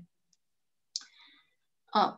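A single short click about a second into an otherwise near-silent pause, trailing off briefly in a faint hiss.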